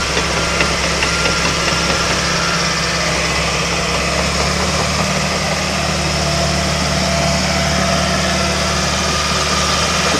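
The diesel engine of a John Deere 550J LT crawler dozer running steadily as the dozer drives and turns.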